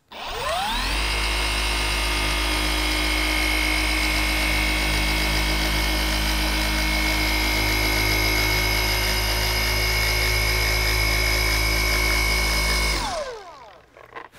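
FLEX cordless random orbital polisher running with a microfiber pad and polishing compound on a painted hood panel. It spins up with a rising whine just after the start, runs steadily for about twelve seconds, then winds down near the end.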